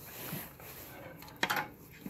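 Faint handling noise with one sharp knock about one and a half seconds in, as a palm sander is moved off the workbench; the sander is not running.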